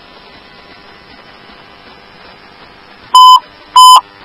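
Faint hiss of an open fire-dispatch radio channel. About three seconds in come two short, loud beeps of the same tone, about half a second apart: dispatch alert tones before the next announcement.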